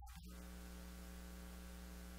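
Steady electrical mains hum with an even hiss underneath.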